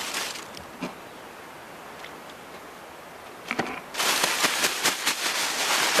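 Plastic bag of breadcrumbs crinkling as battered fish and prawns are shaken inside it to coat them. There is quiet handling with a few soft clicks at first, then loud, continuous crackly crinkling from about four seconds in.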